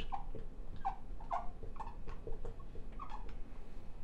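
Dry-erase marker squeaking on a whiteboard while a word is written: a string of short, high squeaks, one per stroke.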